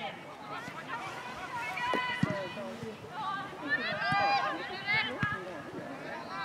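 High-pitched women's voices shouting and calling out across an outdoor football pitch during play, with a few low thumps in between.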